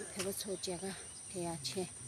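A woman talking, over a steady high-pitched drone of insects such as crickets.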